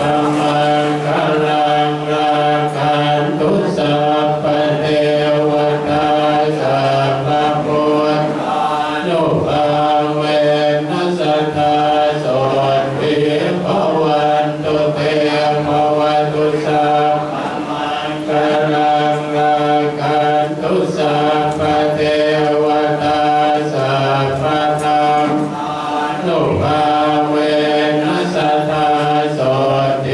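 Group of Buddhist monks chanting together in unison on a near-steady pitch, with brief pauses for breath every several seconds.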